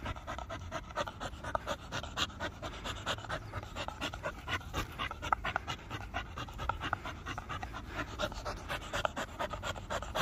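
Blue Staffordshire bull terrier panting hard in quick, uneven breaths, several a second, from the effort of a game of tug with a rope toy.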